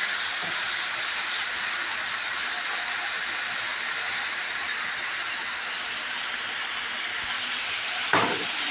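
Potatoes, onions, tomatoes and green chillies sizzling steadily in hot oil in an aluminium wok as they are fried down.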